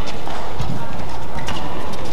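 Badminton doubles rally: sharp cracks of rackets striking the shuttlecock, one clear one about one and a half seconds in, with players' quick footsteps on the court over steady arena crowd noise.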